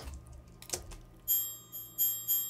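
Metal scrapes made with a chef's knife drawn against a metal bar, played back as a sound-effect layer: from just over a second in, high steady ringing tones like a chime, swelling in repeated strokes about three times a second.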